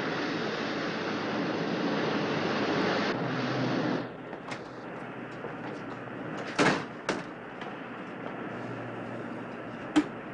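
Steady noise of a boat under way at sea for about four seconds, cutting off abruptly to a quieter steady cabin hum. About two and a half seconds later comes a short sliding knock, like a wooden drawer opening, then a smaller one and a few light clicks.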